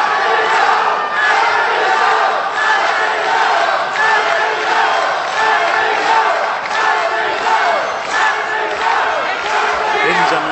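Arena crowd at a pro wrestling match shouting and calling out, many voices overlapping in a steady din.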